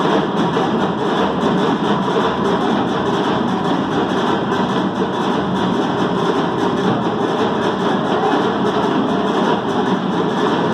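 A drum ensemble playing a fast, dense, unbroken rhythm: seated drummers on tall drums and dancers beating hand-held frame drums together.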